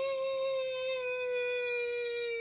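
A man's voice holding one long, high 'ooo' at a steady pitch: a drawn-out nonsense 'Broooo' read aloud as a silly sound.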